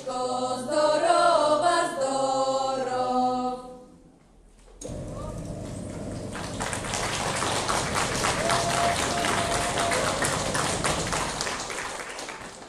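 A small folk ensemble singing a cappella in close harmony, holding its final note until about three and a half seconds in. After a short pause, an audience breaks into steady applause that builds slightly.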